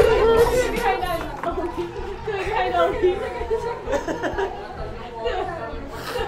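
Several people talking over one another in a room: indistinct chatter.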